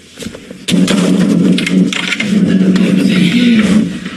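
Loud rustling and rubbing on a phone's microphone as it is handled and carried, with scattered knocks. It starts suddenly about a second in.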